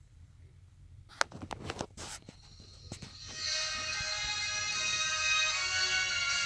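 A few clicks and knocks of handling, then recorded worship music played from a phone starts about three seconds in as a steady, sustained chord.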